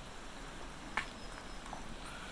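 Steady rush of a glacial creek, with one short, sharp knock about a second in from a small thrown stone landing.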